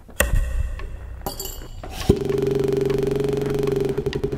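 Percussion on metal: two ringing metallic strikes about a fifth of a second and just over a second in. Then, just after the halfway point, a steady low buzzing tone with a fast pulse starts abruptly and holds.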